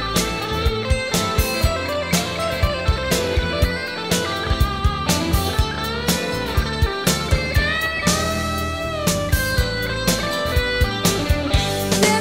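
Instrumental break in a late-1980s rock song: an electric guitar plays lead lines with bent notes over bass and a steady drum beat.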